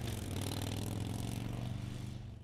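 Motorcycle engine idling steadily, a low-pitched running note with a rapid, even pulse.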